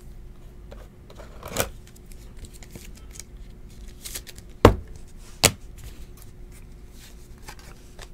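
Trading cards handled and flipped through by hand, card stock sliding and ticking, with a few sharp snaps. The loudest snap comes a little past halfway, with another just after it.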